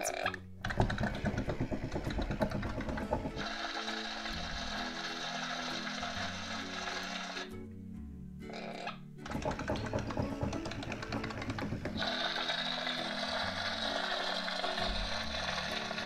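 Disney Frozen 2 Walk and Glow Bruni plush toy's battery-powered walking mechanism running with a fast mechanical clatter, stopping briefly about halfway and then starting again. Music with a stepping bass line plays throughout.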